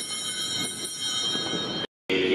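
Altar bells rung at the elevation during the consecration of the Mass: a bright, sustained jingling ring that cuts off suddenly near the end.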